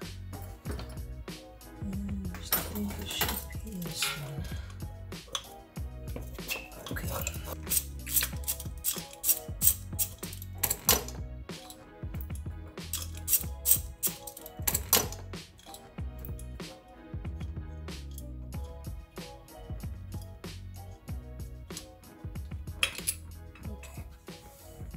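Background music, with many irregular metallic clicks and clinks of hand tools on an aluminium throttle body as a second sensor is unbolted from it.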